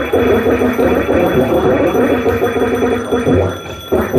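Live experimental electronic noise played through effects pedals: a dense, fluctuating wall of noise that dips briefly near the end and then cuts back in loudly.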